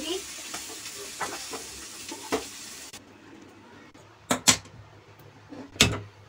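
A spatula scrapes fried potato and cauliflower out of a hot steel pan into a steel bowl while the food still sizzles. About halfway in, the sizzle stops abruptly, followed by a few sharp metal knocks of cookware, the loudest near the end.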